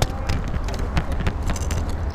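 Close handling noise: a steady low rumble with many scattered sharp clicks and knocks as a landing net is worked at the water's edge.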